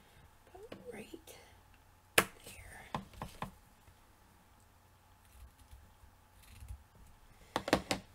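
Scissors snipping through a strip of fabric trim, two quick cuts near the end, after a few sharp clicks and taps of craft supplies being handled.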